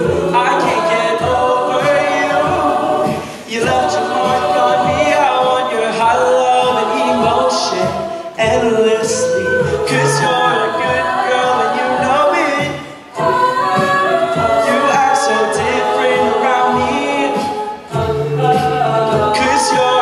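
A cappella group of men and women singing a pop arrangement live, layered harmonies over a steady low beat kept by the voices. The sound dips briefly a few times between phrases.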